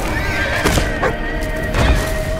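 A Clydesdale horse whinnying in the first second, with two heavy thuds of hooves striking dry ground, the second near the end. Music with steady held tones plays under it.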